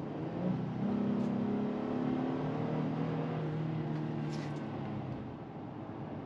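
Inside the cabin of a 2022 Honda Ridgeline, its 3.5-litre V6 hums steadily over road noise while driving. The engine note gets louder about a second in and eases off near the end.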